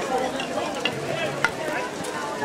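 Street crowd of onlookers talking over one another in an indistinct murmur, over a steady hiss. Two sharp clicks stand out, one near the middle and a louder one about one and a half seconds in.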